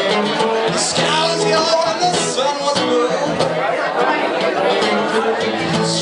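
Hollow-body archtop guitar strummed in a steady rhythm while a man sings along, live.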